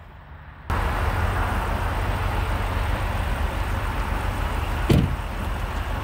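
Steady low rumble of an idling car engine close by, cutting in suddenly just under a second in, with a single sharp knock about five seconds in.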